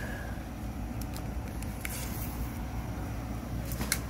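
Steady low background hum, with a few faint clicks of handling.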